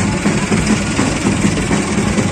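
Tractor engine running steadily with a low hum, with music playing alongside.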